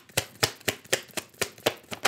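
A tarot deck being shuffled by hand: a quick, even run of card clicks, about six a second.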